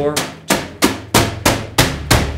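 A drum-fill run of single stick strokes on drum-kit toms, evenly spaced at about three hits a second, working around from the rack toms to the floor tom.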